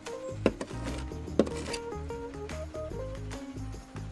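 Background music with a melody of held notes. Two sharp clicks about a second apart near the start.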